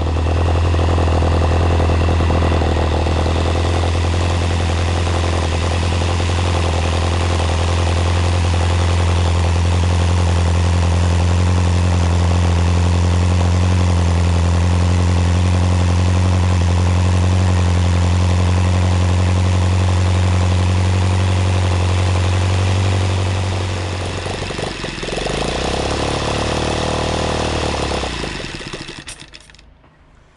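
OS FT 120 Gemini four-stroke flat-twin model aircraft engine running steadily at high speed with its propeller turning, on its first run. About 24 seconds in it drops to a lower, uneven speed, then winds down and stops near the end.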